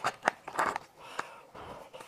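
Sharp cracks and crackling from a large cooked lobster's shell being pulled apart by hands in plastic gloves. There are several cracks in the first second and one more a little later.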